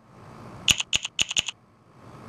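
Facemoji phone keyboard's key-click sound, the 'A' key-sound preset, played as a quick run of about eight identical clicks starting a little under a second in.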